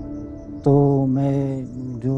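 Soft ambient drone music fading out, then a man's voice in long, steady-pitched phrases, almost like chanting, starting about two-thirds of a second in.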